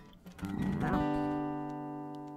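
Song ending on acoustic guitar: a short gliding sound about half a second in, then the final chord rings out and slowly fades.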